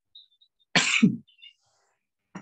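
A person coughing once, short and loud, about a second in.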